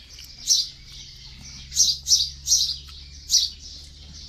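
Small birds chirping: five short, high chirps, three of them in quick succession in the middle, over a faint steady background hiss.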